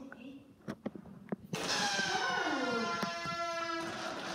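Air rushing out of the neck of an inflated long balloon, a loud squeal with several pitches sliding slowly downward. It starts suddenly about one and a half seconds in and lasts to the end. A few short squeaks of the balloon's rubber come before it.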